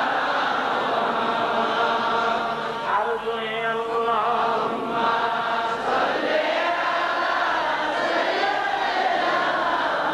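A large gathering of men chanting 'Allah' together in one voice, a long sustained zikr. One wavering voice stands out above the crowd about three seconds in.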